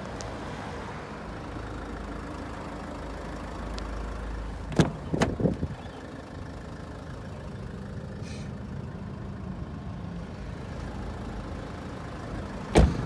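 Rear passenger door of a Range Rover Evoque being opened: a sharp latch click about five seconds in, followed by a few softer knocks as the door swings open, over a steady low vehicle rumble.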